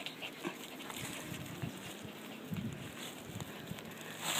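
A small dog making faint, quiet sounds close by, with a few soft low bumps about two and a half to three and a half seconds in.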